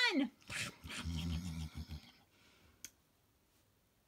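A person's low, growly eating noises voicing a puppet munching its food, lasting about a second and a half, followed by a single sharp click.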